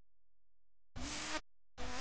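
Two short, half-second sounds from an old cải lương recording, the first about a second in and the second just before the end, after near silence.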